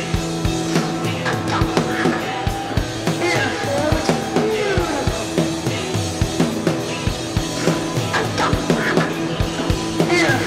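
Experimental rock sound collage: a repeating drum-kit loop under held droning tones and warbling tones that glide up and down.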